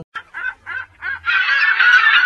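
Cartoon seagulls squawking: a few short separate calls, then many gulls calling at once from a little past the middle.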